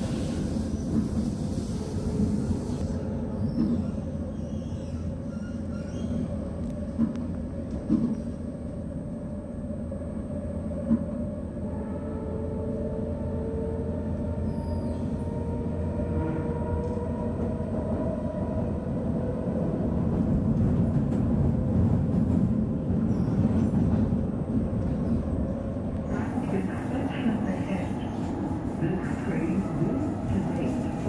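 MRT train running, heard from inside the carriage: a steady rumble of wheels on the track with a faint motor whine and a few clicks.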